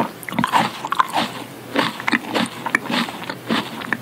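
Close-miked chewing of tomato: a run of short mouth sounds, nearly three a second, uneven in spacing.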